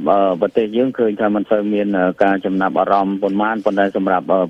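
Only speech: a man talking continuously in a radio news broadcast, with a narrow, band-limited radio sound.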